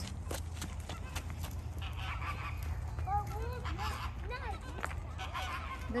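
A flock of flamingos giving short, nasal, goose-like honking calls, repeated several times from about halfway in.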